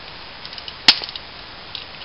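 A single sharp click about a second in, with a few faint ticks around it, as the handheld LED torch is handled close to the microphone.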